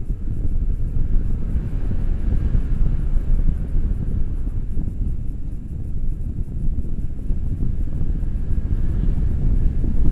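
Wind rushing over a pole-mounted action camera's microphone during a tandem paraglider flight: a steady, loud low rumble.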